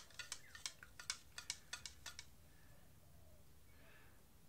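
Stir stick clicking against the inside of a small cup of black acrylic paint as it is stirred: a quick, faint run of clicks for about two seconds.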